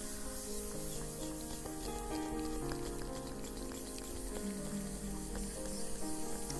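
Slow, soft piano music with held notes, under a continuous faint crackling hiss like rustling or sizzling.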